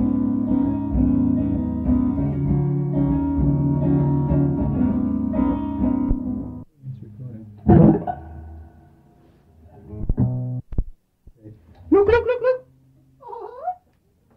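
Guitars playing together in a loose rehearsal jam, cutting off abruptly after about six and a half seconds. Then a few scattered picked notes and knocks follow, with a short burst of voice near the end.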